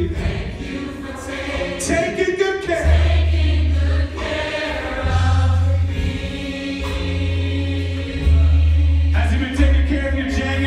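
Live gospel choir singing with band accompaniment, heavy sustained bass notes changing every second or two under the voices.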